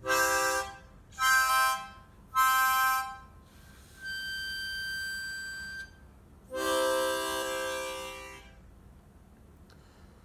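Hohner Marine Band diatonic harmonica in C, blown in short chords: three quick chords, then a quieter single high note held for about two seconds, then a longer, fuller chord that fades out. On the blow holes each chord is the C major tonic chord (C, E, G).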